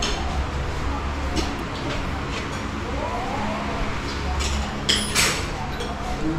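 Low rumble and rustle of a handheld camera being carried across a room, with faint voices in the background and a couple of sharp clicks about five seconds in.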